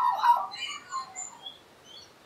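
Australian magpie warbling: a run of gliding, warbled notes that fades out after about a second and a half.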